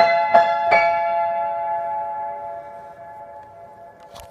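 Upright piano: three notes or chords struck in quick succession in the first second, then left to ring and slowly die away. These are the closing notes of the improvisation.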